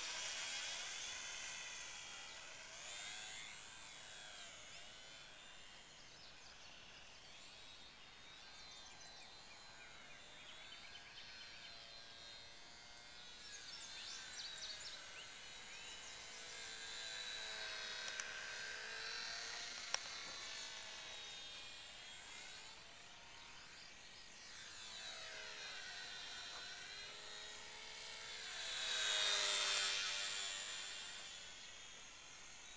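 HobbyZone Champ RC airplane's small electric motor and propeller whining in flight, the pitch sliding up and down as the plane passes by, loudest near the start and again near the end. Two brief clicks come in the middle.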